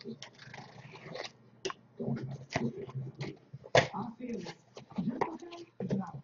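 A cardboard shipping case being cut open and its flaps pulled back: scattered sharp clicks and scrapes of blade, tape and cardboard, with short quiet voiced sounds in between.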